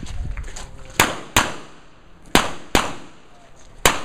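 Pistol shots fired in quick pairs: two pairs about a second apart, then a fifth shot near the end, each a sharp crack with a brief echo.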